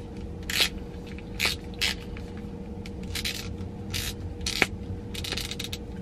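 Plastic eye-cream container being twisted and worked by hand, giving short scraping, hissy clicks at irregular intervals, one sharper click near the end. The dispenser is not yet giving out any cream.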